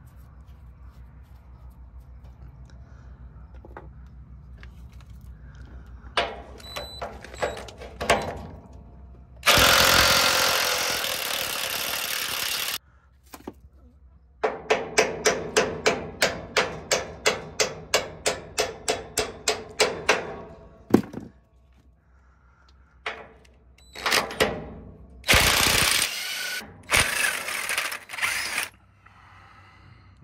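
Hand hammer striking a rusted leaf-spring shackle bolt to drive it out, a fast run of about twenty blows at roughly three a second. Before the run there are a few separate knocks and a few seconds of loud steady rushing noise, and after it come more loud bursts of noise, over a low steady hum.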